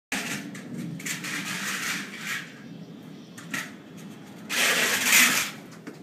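Kick scooter's small wheels rolling over a concrete walkway: a continuous rattling rumble with scattered clicks, swelling into a louder hiss for about a second near the end.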